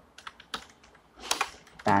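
Computer keyboard typing: a string of separate key clicks at an uneven pace as a short word is typed.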